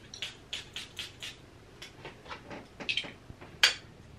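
A glass perfume atomizer bottle sprayed again and again onto the neck: a series of short hissing spritzes with small handling clicks, the sharpest one near the end.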